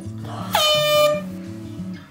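A loud horn-like blast begins about half a second in, dips slightly in pitch at the start, then holds steady for under a second. It plays over background music.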